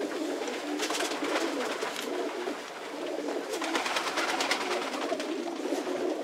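Racing pigeons cooing in a loft, a steady overlapping chorus of low coos. There are two short spells of rustling, about a second in and around four seconds in.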